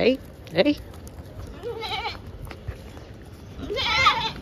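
A goat bleating, with one short, clear bleat about two seconds in.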